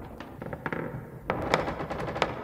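Quiet, irregular sharp clicks and knocks, coming closer together in the second half.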